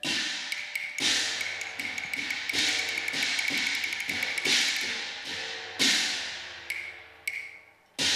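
Cantonese opera percussion interlude: sharp crashes of cymbals and gong recurring every second or two, each ringing out, with quick wooden clapper taps that speed up and crowd together between them.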